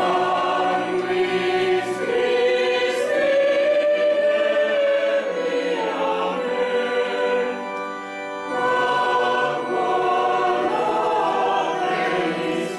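Choir singing sacred music at a sung Mass, voices holding long sustained notes.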